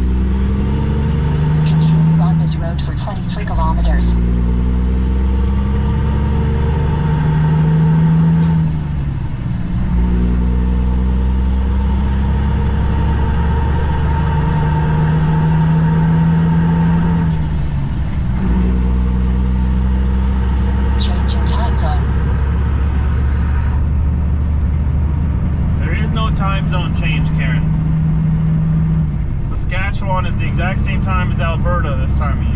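Semi truck's diesel engine heard from the cab, pulling up through the gears. A high turbo whistle rises with each gear and drops sharply at each of about three shifts, and the engine note changes pitch with them.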